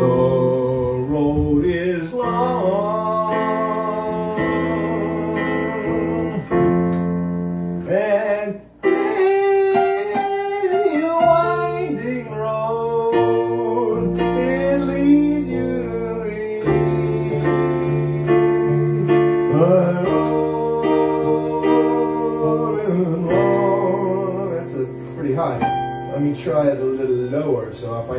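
An electronic keyboard plays a song, with a chordal accompaniment and a guitar-like sound over it, and a woman sings along into a microphone at times. The music drops out briefly about eight seconds in.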